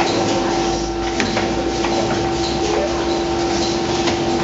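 Demtec 2016EVO automatic potting line running: conveyor belts and their electric gear motors give a steady mechanical hum with two steady tones over a rushing noise. A sharp click comes a little over a second in.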